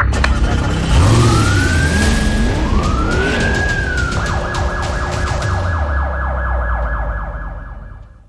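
Police siren sound effect in a produced intro sting: two rising-and-falling wails, then a fast warbling yelp over a low rumble, fading out near the end.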